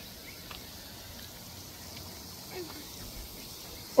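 Pop-up lawn sprinkler spray head spraying, a faint steady hiss under quiet outdoor background; a brief faint voice sound comes about two and a half seconds in.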